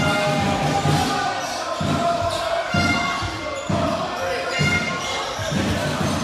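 Background music with sustained tones over a low thumping beat about once a second.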